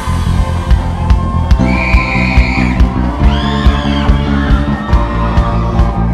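Live band playing loud amplified music, with a steady drum beat under bass and sustained guitar or keyboard notes, in an instrumental passage between sung lines.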